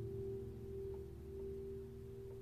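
Quiet instrumental background music holding a sustained chord that slowly fades.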